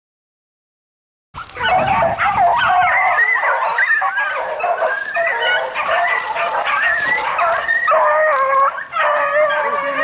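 After a second of silence, a pack of beagles baying together without a break, several overlapping howling voices: hounds in full cry on a cottontail's trail.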